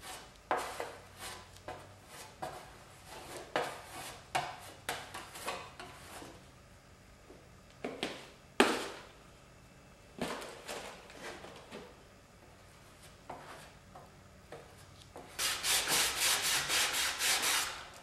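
Plastic spreader scraping body filler across a sheet-metal panel in short, irregular strokes. A few seconds before the end it gives way to fast, even back-and-forth sanding of the filler with an 80-grit sanding block, about four strokes a second.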